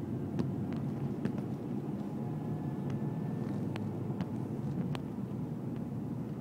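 A car driving along at road speed, heard from inside the cabin: a steady low rumble of engine and tyres, with several short sharp clicks scattered through it.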